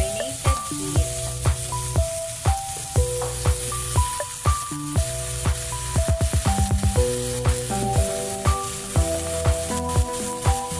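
Background music with a steady beat, about two drum hits a second and a quick drum roll around six seconds in, over the steady sizzle of beef frying with onions and garlic in a pan.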